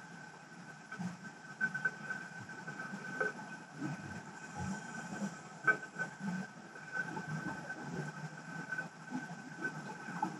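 Underwater ambience recorded by a camera on the seabed: a steady high thin whine over an irregular low rumble, with a few short clicks.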